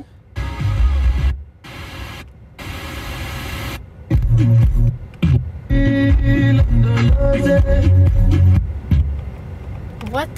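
Car radio being tuned from station to station: short snatches of music, each cut off by a sudden brief gap as the tuner jumps, then a longer stretch of music playing from the car's speakers.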